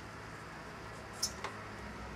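A sharp click from the switch of a small electric wet tile saw, followed near the end by the saw's motor starting up with a low, steady hum.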